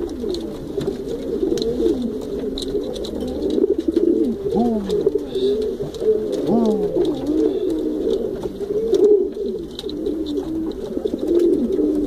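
Pigeons cooing continuously, several coos overlapping, with a couple of clear swooping coos a little before the middle.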